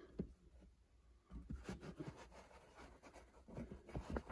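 Faint rustling and light scratchy ticks of a hand handling fabric baseball caps, in short irregular bursts.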